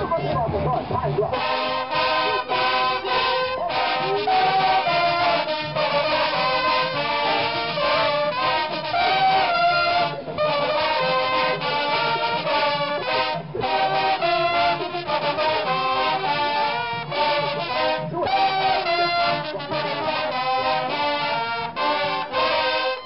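Marching band brass, trombones and other horns, playing loud chords to a steady beat, starting about a second in after a moment of crowd shouting.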